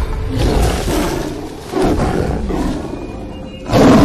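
A tiger roaring and snarling in a film soundtrack, with three outbursts and the loudest near the end, over background music.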